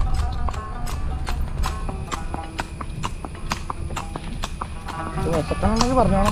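Horse's hooves clip-clopping on a paved road as it walks, a steady beat of sharp strikes about two to three a second.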